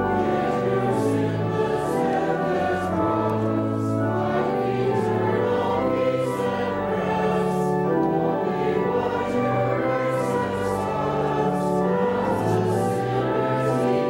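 Slow sacred choral singing: voices in held chords that change about once a second, at an even level.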